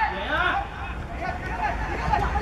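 Spectators' voices calling out and chattering over a steady low rumble.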